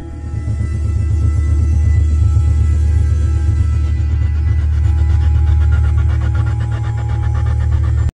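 Background music over a loud, steady low drone with sustained tones above it, swelling in over the first second; from about halfway a fast, pulsing higher layer joins in.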